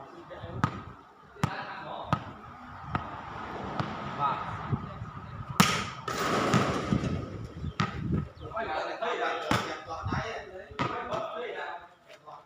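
A ball being kicked back and forth, sharp thuds about once a second with the hardest near the middle, among players' shouts and calls.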